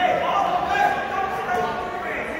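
Several spectators' voices calling out at once in a gymnasium, held and overlapping, with a sharp knock right at the start.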